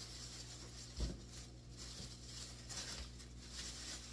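Faint rustling of a thin plastic shopping bag as a skein of yarn is put into it and the bag is handled, with a soft thump about a second in.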